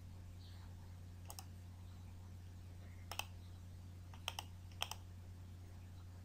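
Computer mouse button clicking four times, each click a quick pair of snaps, over a steady low hum.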